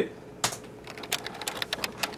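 Typing on a computer keyboard: a quick, irregular run of keystrokes and clicks starting about half a second in.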